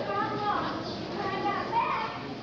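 Children's voices speaking on a stage, distant and indistinct.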